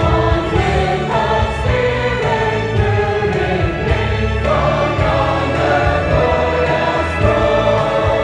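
A choir singing a gospel song, holding chords that shift every second or so over a steady low bass accompaniment.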